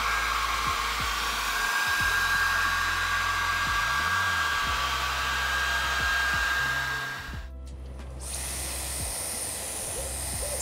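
Handheld hair dryer running steadily, drying freshly sprayed black underglaze that looked drippy. It cuts off about seven seconds in, and a steady high hiss follows.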